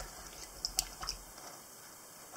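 Wooden citrus reamer stirring lime juice and cracked pepper in a small ceramic ramekin: a few faint taps in the first second.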